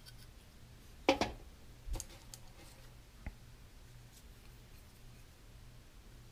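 Small pottery hand tools being handled at a bisqued clay ocarina: a sharp click about a second in, a second knock near two seconds and a faint tick a little after three seconds, as a metal needle tool clears glaze from a finger hole and is set down for a brush.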